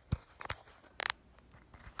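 A few short clicks and knocks, the sharpest just after the start and a pair about half a second in, then a brief hissy rustle about a second in: handling noise from the hand-held camera as it is moved over the desk.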